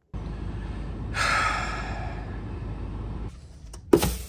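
A person's long breathy sigh about a second in, over a low steady rumble. The rumble stops near the end and a short thud follows.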